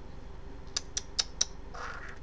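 Four quick light clicks, about a fifth of a second apart, over a low steady hum, followed by a short breathy sound near the end.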